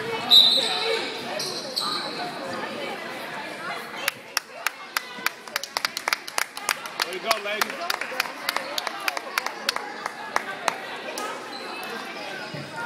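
A short, loud, high whistle blast about half a second in, typical of a referee's whistle, with a second short blast soon after. From about four seconds in, a basketball bounces repeatedly on the hardwood gym floor, roughly three sharp bounces a second, echoing in the hall.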